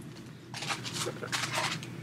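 Rustling and light handling noises as small cosmetic sample packages are put back into a box, in a few short bursts around half a second and a second and a half in.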